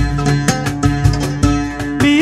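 Instrumental passage of Somali music played live: an oud plucking a melody over a steady rhythm of hand strokes on a cajon.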